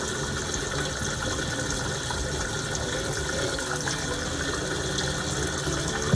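Kitchen faucet running into the sink with a steady rush of water, left open to flush bleach-treated water out of the plumbing after the well has been shock-chlorinated.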